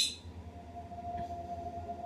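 A single steady electronic tone from the Ethereal Spirit Box ghost-box software, starting about half a second in and holding, over a constant low hum.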